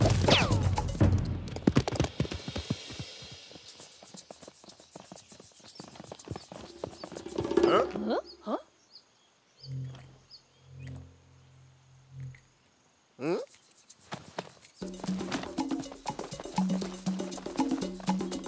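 Cartoon soundtrack: music mixed with animal-like character vocal sounds and sound effects. About halfway through it drops to a quiet stretch of a few soft tones, then the music comes back.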